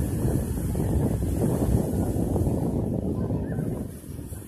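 Wind buffeting the microphone in a loud, rough low rumble, over waves breaking on the shore. The rumble drops away suddenly at the very end.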